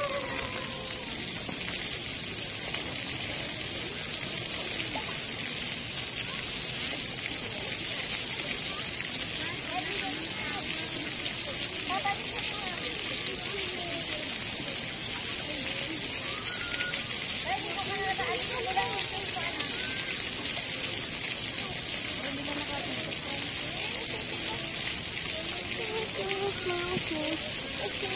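Splash pad water jets spraying steadily, a continuous hiss of falling water, with children's voices faint in the background.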